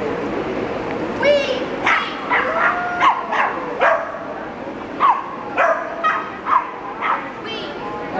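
Small dog yipping and barking in short, high-pitched calls, several a second, in two runs with a brief lull about halfway through.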